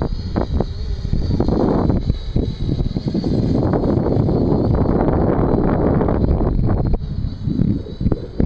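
Wind buffeting the microphone in irregular gusts, a loud low rumbling rush that swells and dips.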